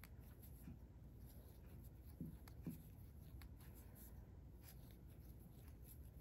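Near silence: room tone with faint scratchy rustling of a fine steel crochet hook drawing size 10 cotton thread through stitches, and two soft bumps about half a second apart a little past two seconds in.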